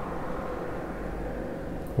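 Steady low background noise with a faint hum and no distinct events.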